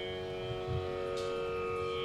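Steady sruti drone of a Carnatic concert, holding one pitch with its overtones and no melody over it, plus a couple of soft low thuds near the middle.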